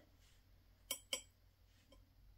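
Near silence, broken about a second in by two light clicks a quarter of a second apart: a watercolour brush tapping against the well of a ceramic palette as it is loaded with paint.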